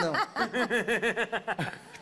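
Laughter: a quick run of short, repeated laughs that fades out near the end.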